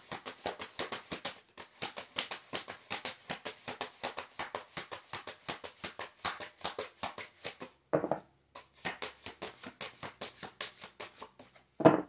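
A deck of oracle cards being shuffled by hand: a steady run of quick card slaps, about seven a second, pausing briefly now and then. There are a couple of louder knocks, about eight seconds in and just before the end.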